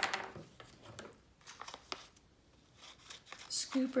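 Sheets of paper handled with light rustles and a few small clicks, then small craft scissors snipping through paper near the end.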